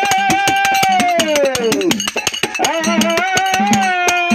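Folk song performance: a singer holds a long high note that slides down about halfway through and then rises back. Under it run rapid, even strikes of small hand cymbals and a steady drum beat.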